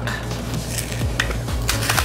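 Foil booster-pack wrapper crinkling and tearing open, with a few sharp crackles in the second half, over a steady bass line of background music.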